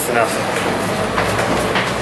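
New York City subway train running in the station, a loud steady rumble with clattering, under people's voices.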